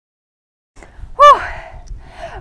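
Silence at first, then faint wind noise and, about a second in, a woman's short, high-pitched excited whoop of delight on reaching the summit.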